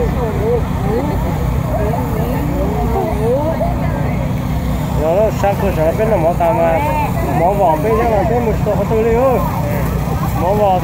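Several people talking close to the microphone, livelier in the second half, over a steady low rumble.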